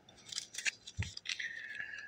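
Small zip-top plastic seed packets crinkling and clicking as they are handled, with a soft thump about a second in.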